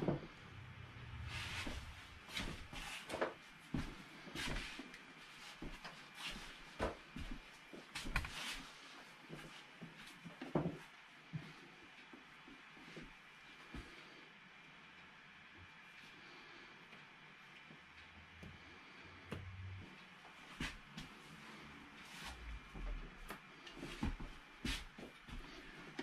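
Irregular soft knocks, taps and scrapes of a painting tool mixing oil paint on a palette and dabbing it onto a canvas, with a quieter stretch in the middle.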